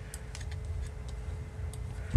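Faint, irregular light clicks as the prop nut is taken off and the plastic propeller is handled on a drone motor.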